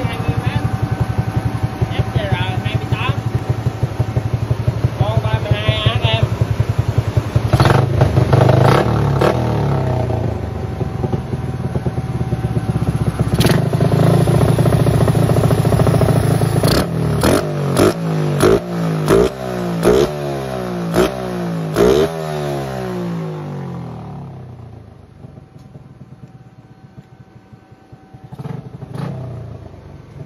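Yamaha Exciter 135 single-cylinder four-stroke engine, bored to 62 mm and running an FCR 28 carburetor with an AHM exhaust, at a fast idle. Partway through it is held at high revs, then blipped sharply about eight times in quick succession. It then drops back to a quieter idle, with one more short blip near the end.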